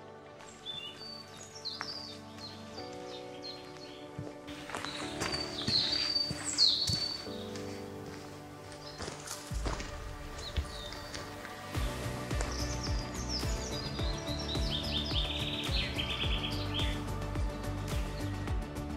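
Small songbirds chirping and singing in short bursts over soft background music, ending with a falling run of quick notes near the end.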